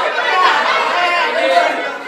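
Many voices talking and calling out over one another: the chatter of a group in a large hall.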